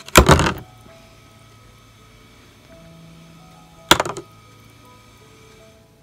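Small brass sharpener parts dropped into a plastic bowl of water: a loud clattering splash right at the start and a second sharp knock about four seconds in. Faint background music under it.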